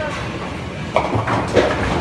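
Bowling ball rolling down a wooden lane with a low rumble, then hitting the pins about a second in with a sharp clatter that carries on for a moment.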